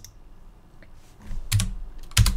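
Computer keyboard keystrokes: a faint key press near the start, then two sharper presses about a second and a half in, over a low steady hum.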